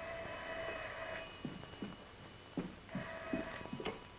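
Telephone bell ringing twice: a ring of about a second, then a shorter second ring near the end. A few soft knocks fall between the rings.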